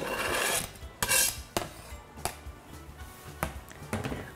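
Kitchen knife scraping diced onion and garlic off a plastic cutting board into a glass bowl, a rasping scrape in about the first second. It is followed by a few light clicks and knocks.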